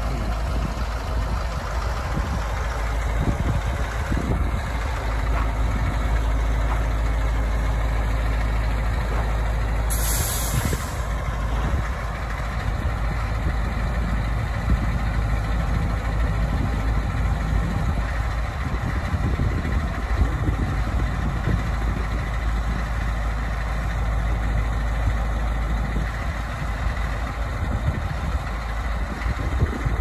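The Caterpillar diesel engine of an Ag-Chem Terra-Gator 1844 floater runs steadily throughout. About ten seconds in comes a short hiss of air from its air brakes, lasting about a second.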